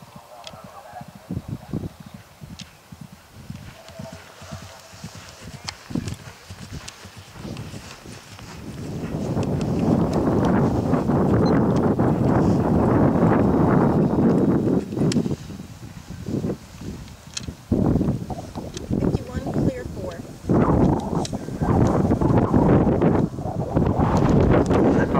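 A horse galloping on grass, its hoofbeats drumming in a steady rhythm. From about nine to fifteen seconds there is a long, loud rush of noise as it comes near and jumps a fence, and more loud, uneven stretches follow near the end.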